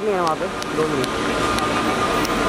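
Steady background hum of a busy airport terminal hall, with a man's brief speech at the start.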